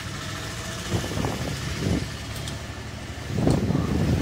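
A motor-vehicle engine idling steadily in the background, with a few short louder sounds about a second in and again near the end.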